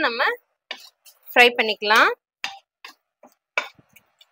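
Two brief bits of speech, with a steel spoon clicking a few times against a metal kadai as it stirs.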